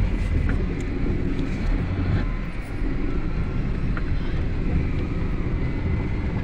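Steady low rumble of a moving car heard from inside the cabin: engine and tyre noise on the road.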